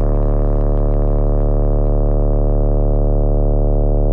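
A single held synthesizer tone, deep and steady, sounding unchanged throughout as the music's closing note.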